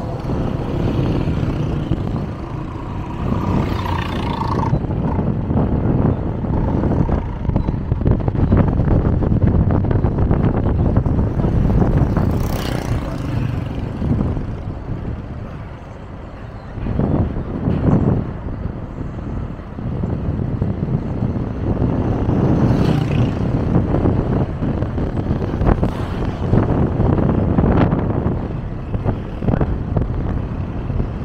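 Moving road vehicle's running noise mixed with wind rumbling on the microphone, its loudness rising and falling, with passing traffic on a city road.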